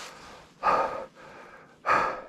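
A man breathing hard, with two loud breaths about a second apart, winded from walking a snow-covered trail.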